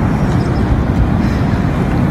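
Wind rumbling on a phone's microphone: a steady, low rumble.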